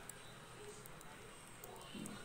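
Very quiet: faint sounds of a kitchen knife slicing through a soft sponge cupcake held in a plastic-gloved hand, with a few soft clicks.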